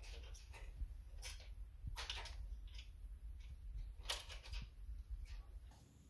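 Scattered light clicks and scrapes of hand work at the back of a Rapid 106 electric stapler's staple head as its two 8 mm nuts are loosened, over a steady low hum.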